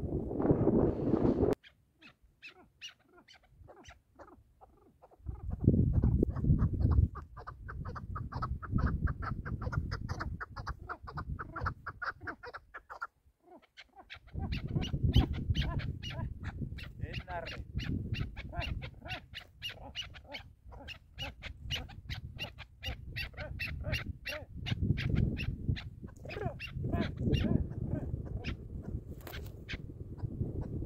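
Chukar partridge calling in long, rapid runs of clucks. Patches of low rumbling noise come and go beneath the calls.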